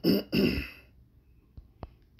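A man clearing his throat, two rough bursts in the first second, followed by two faint clicks.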